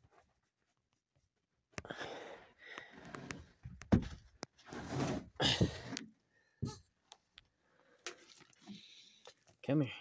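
Rustling and bumping handling noise from a phone held close while a person reaches for a baby goat, irregular and loud for a few seconds, with a sharp knock in the middle.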